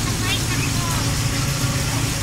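Passenger jeepney's diesel engine running, a steady low drone heard from inside the open-sided passenger cabin.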